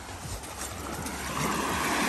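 Small sea waves washing up on a sandy beach, with faint footsteps in wet sand; the wash swells louder in the second half as a wave runs up the shore.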